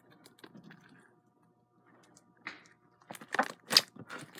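White slime with lotion being pressed and kneaded by hand: faint sticky crackles, then near the end a quick run of sharp pops and clicks as air is squeezed out of the slime, the last one loudest.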